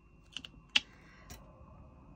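Diamond painting drill pen clicking against the plastic drill tray and resin drills as drills are picked up and placed: four light, separate clicks, the loudest a little before a second in.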